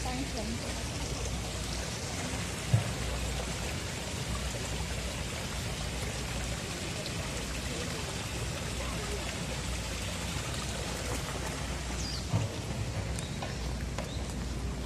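Steady hiss of running water from a small stream spilling down a little stone cascade, with a soft thump about three seconds in and another near the end.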